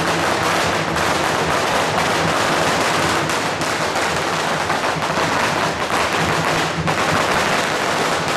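A long string of firecrackers going off in a continuous rapid crackle of bangs.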